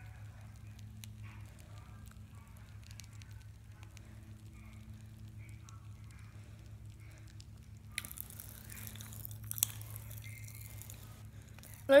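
Pop Rocks popping candy crackling faintly in a mouth as it is chewed, with small scattered pops and wet mouth sounds. About eight seconds in, a louder brushing noise with a couple of sharp clicks joins it.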